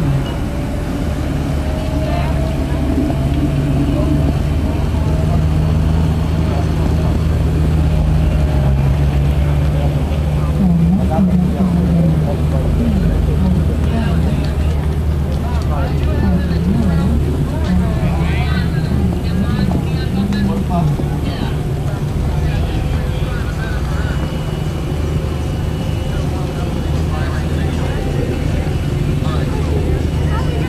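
A motor runs steadily with a low hum throughout. Indistinct voices come through in the middle.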